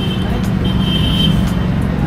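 Steady low rumble of street traffic, with a thin high whine over it for about the first second and a half.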